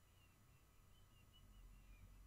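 Near silence: a faint low hum, with faint short high chirps repeating every few tenths of a second.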